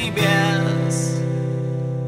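Acoustic guitar: one chord strummed just after the start and left ringing, slowly fading.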